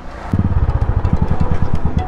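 Single-cylinder Royal Enfield motorcycle engine running at low speed, a steady beat of even exhaust thumps, about ten a second, starting about a third of a second in.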